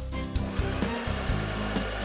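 Background music with a steady beat, and over it a steady whirring like a sewing machine running, lasting about a second and a half.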